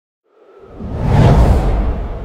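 A swelling whoosh transition sound effect with a deep rumble underneath. It rises out of silence about half a second in, peaks around a second and a half, and then fades slowly.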